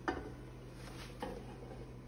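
A skillet knocking against a stockpot as browned ground beef is tipped in: a sharp knock right at the start and a softer one just past a second, over a steady low hum.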